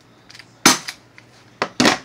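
A green gas airsoft pistol without its silencer fired twice, two sharp pops a little over a second apart.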